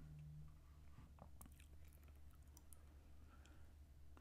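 Near silence: faint low room hum with a few faint, short clicks.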